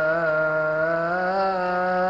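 A single male voice chanting a long melismatic Coptic Orthodox liturgical chant, holding drawn-out notes and bending them with small ornamental turns.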